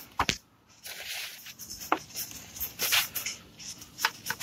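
A blue shop towel rustling and crinkling as it is pressed and tucked around the timing chain tensioner plug, with a sharp click just after the start and a few lighter clicks of fingers against the metal.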